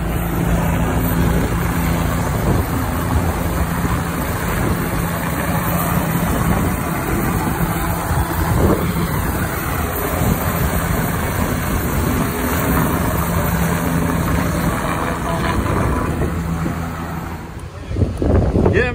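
Helicopter flying close by: steady, loud rotor and engine noise.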